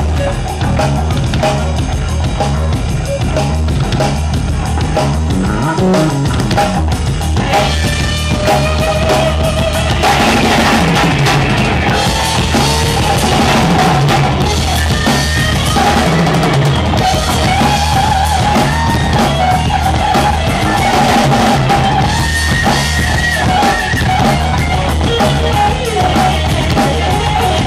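Live rock band playing: electric guitar, bass guitar and drum kit with a steady beat, the guitars growing fuller and louder about ten seconds in.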